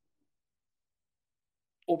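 Near silence for most of the time, with not even room tone, then a man starts speaking near the end.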